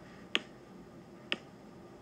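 Two sharp taps about a second apart: a stylus tapping on the glass screen of an iPad.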